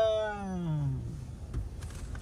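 A person's voice holds one long drawn-out vowel that slides down in pitch and dies away about a second in. After it comes a quieter stretch of low road rumble inside the car.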